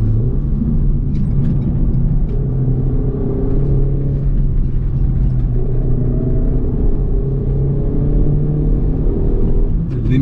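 Steady in-cabin rumble of the Renault Megane RS280 Cup's turbocharged four-cylinder engine and tyres at highway cruising speed, with a music track mixed in over it.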